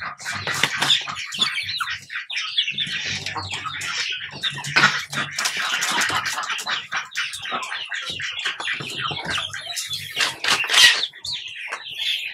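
Rhode Island Red hens pecking and scratching at grated coconut pulp on a mat over a plastic slatted floor: a dense, uneven run of quick taps and scrapes, with low hen murmurs now and then and a louder flurry about eleven seconds in.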